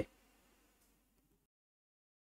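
Near silence: faint room tone that cuts to dead silence about one and a half seconds in.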